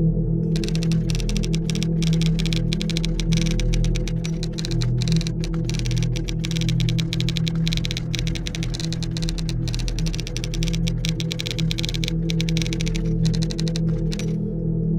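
Keyboard-typing sound effect, a rapid run of clicks starting about half a second in, over steady ambient background music.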